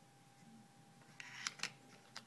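Quiet room tone, then in the second second a brief rustle and two light clicks as small plastic items, a USB flash drive and an SD card, are handled by hand.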